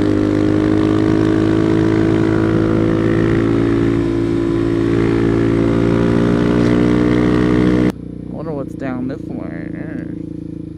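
Suzuki DR-Z400SM single-cylinder four-stroke engine running steadily at cruising speed, heard from a helmet-mounted camera with wind. About eight seconds in, the sound cuts off abruptly to a quieter stretch of riding with a brief voice.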